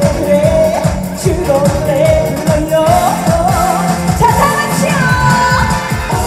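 A woman singing an upbeat Korean trot song live into a handheld microphone over backing music with a steady dance beat.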